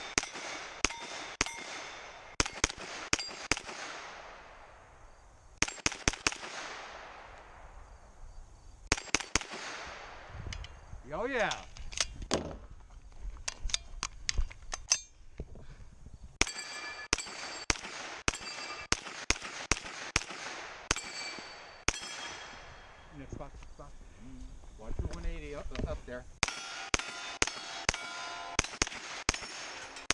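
Carbine shots fired in quick strings of about five, each string a second or two long with a pause of a few seconds between, every shot followed by the ring of a steel target plate being hit.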